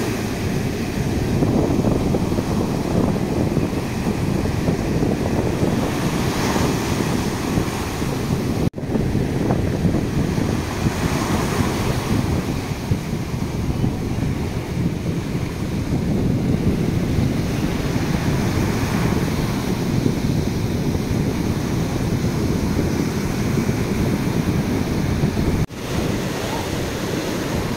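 Surf breaking and washing up a sandy beach, a steady rushing with wind buffeting the microphone. The sound cuts out for an instant twice, about nine seconds in and near the end.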